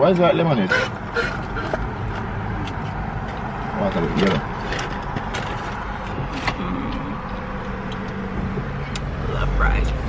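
Steady hum and hiss inside a car's cabin, with a few brief low voices and scattered small clicks.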